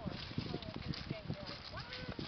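A horse being led at a walk: irregular hoofbeats and footsteps on a dirt and sand paddock, several soft thuds a second.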